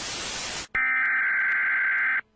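TV static hiss that cuts off suddenly. After a brief gap comes a loud, steady electronic alert tone, as on an emergency broadcast system card over colour bars.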